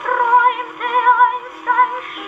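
A 1917 Victor acoustic phonograph playing a 78 rpm record of a 1930s German song: a singer with a strong vibrato over instrumental accompaniment. The sound is thin, with little bass or treble.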